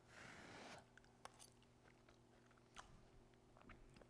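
Faint chewing of a mouthful of soft roasted spaghetti squash: a soft hiss in the first second, then a few faint mouth clicks.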